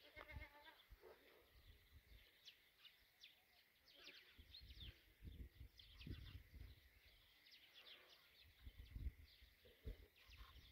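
Faint rural quiet: a goat bleats briefly just after the start, small birds chirp on and off throughout, and there are a few soft low thuds.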